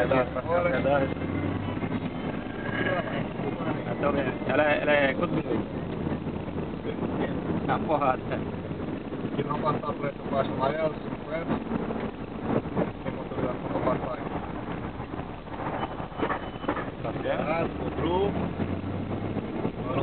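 Car cabin noise: a steady low drone from the engine and road under indistinct talk and laughter from the occupants.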